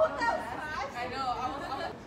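A group of teenage girls chattering, several voices talking over one another with no clear words.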